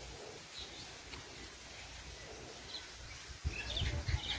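Faint birds chirping now and then over quiet outdoor background noise; a louder low rumble on the microphone starts near the end.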